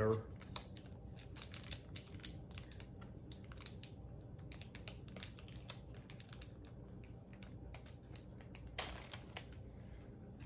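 Crinkly plastic packaging being handled and pulled off a pin on its backing card: a run of small, irregular crackles, with one louder rustle about nine seconds in.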